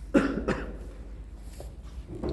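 A person coughing twice in quick succession, the second cough a little weaker than the first.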